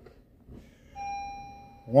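Car dashboard warning chime, one steady ding starting about halfway in and fading away over about a second. It is one of a series of repeating chimes in a 2012 Honda Civic with the ignition on.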